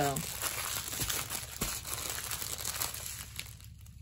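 Clear plastic wrapping crinkling as a bundle of diamond-painting drill bags is handled, quietening near the end.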